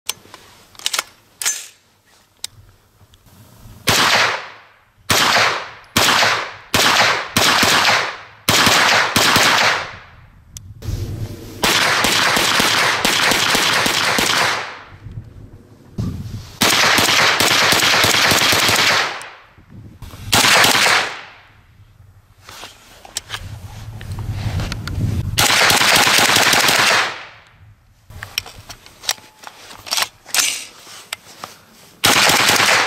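V-AR 9mm self-loading rifle with a locked breech firing: a run of single shots about two a second, then several strings of rapid fire, each lasting two to three seconds. Small clicks at the start and near the end.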